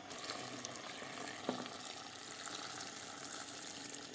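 Boiling water poured from a saucepan into a hot pan of browned chicken and green olives, with a faint steady pour and sizzle. A light knock comes about a second and a half in.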